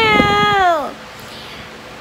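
A toddler's drawn-out whining cry that falls in pitch and trails off just under a second in.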